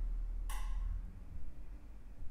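A single sharp tap about half a second in, with a short ringing tone that fades within half a second, over a low steady rumble.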